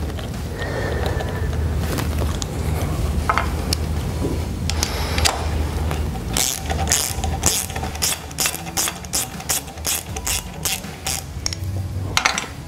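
Star wheel on a Tri Tool 603SBCM clamshell severing lathe being turned by hand with its star wheel tool to run the tool block along its slide: scattered clicks at first, then about halfway through a quick even run of metal ratchet-like clicks, about three a second, over a steady low hum.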